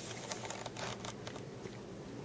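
Faint handling noise: soft rustling with scattered light clicks as hands work close to the microphone.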